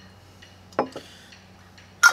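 Metal lids being screwed onto glass quart mason jars, with two quick clicks of metal on glass a little under a second in.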